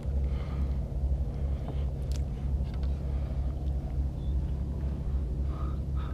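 Steady low rumble, with a few faint clicks about two seconds in as a hook is worked free of a redfish's mouth by hand.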